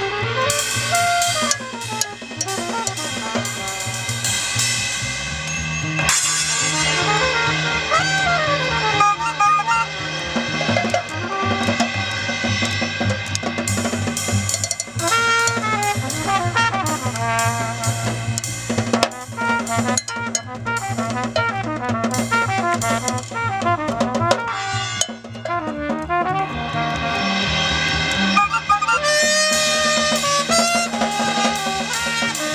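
Jazz played on trumpet, double bass and drum kit: the bass holds long low notes, the trumpet plays a sliding, wandering line above, and the drums keep up busy snare and cymbal strokes.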